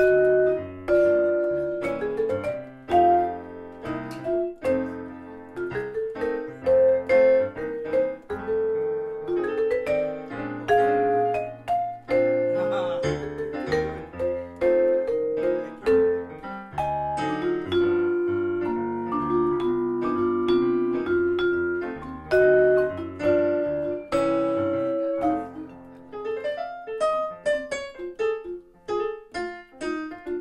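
Jazz on a Musser vibraphone played with yarn mallets: a melodic line of struck, ringing notes, accompanied by a digital piano.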